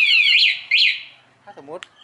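Motorcycle anti-theft alarm siren on a Honda MSX125 warbling rapidly, then two short chirps before it stops about a second in as it is switched off from the remote.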